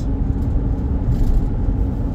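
Steady low rumble of a vehicle driving at road speed, engine and tyre noise heard from inside the cabin.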